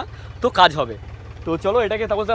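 A man talking in short bursts over a steady, low diesel engine idle that runs throughout.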